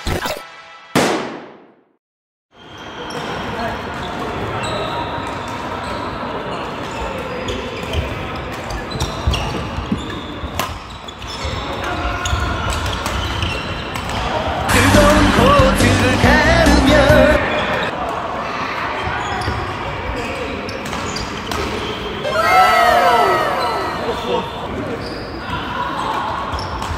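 Badminton doubles play in a large indoor hall: repeated sharp racket strikes on the shuttlecock and the squeak of court shoes on the sports floor, with voices from many courts around. It opens with a brief falling whoosh and a moment of silence before the court sound comes in.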